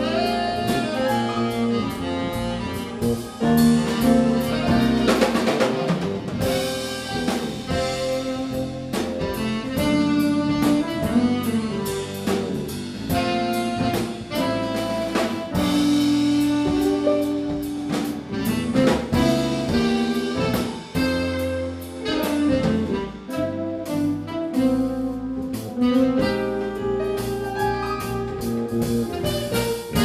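Small jazz band playing an instrumental piece live: saxophone over electric keyboard, bass guitar and drum kit, with steady drum strokes throughout.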